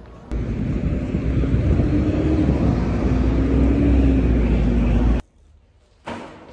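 Loud, steady low rumble of a vehicle in motion, with a faint hum that wavers in pitch. It starts just after the beginning and cuts off suddenly about five seconds in.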